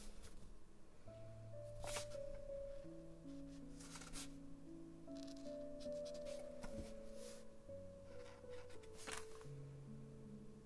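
Quiet, dreamy background music of slow, held notes that step from pitch to pitch. Now and then a brief scratchy stroke of a felt-tip marker drawing on paper.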